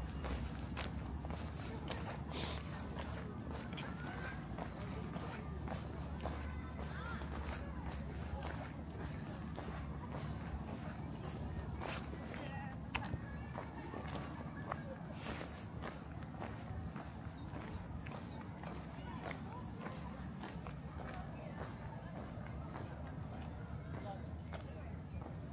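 Footsteps walking along a footpath, with faint voices of people in the distance.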